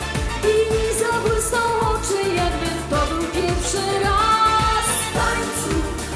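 A woman's voice singing a Silesian schlager song over a band backing with a steady dance beat.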